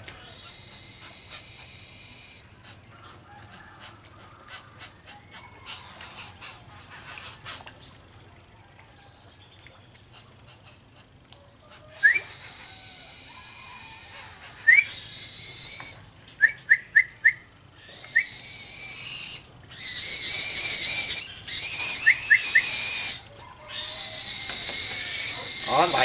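Pet falcons calling while being called in to be fed: short rising high whistles, a lone one and then a quick run of four, followed by longer, louder shrill calls repeated over the last several seconds.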